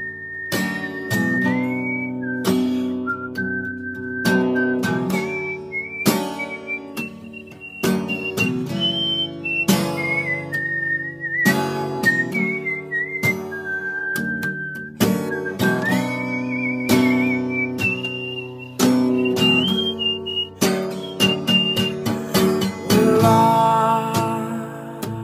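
Acoustic guitar strummed in a steady rhythm, with a man whistling a melody over the chords, the tune moving up and down in short phrases.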